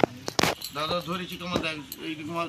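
Low voices talking quietly, with a few sharp metallic clinks. The loudest clink comes about half a second in.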